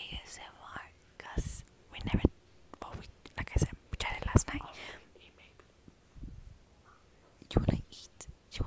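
A woman whispering close to the microphone in short breathy bursts with pauses between them, and a quieter gap of about two seconds near the end.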